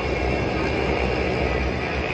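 Racing car engines running out on the circuit, heard as a steady, dense drone with no single car passing close.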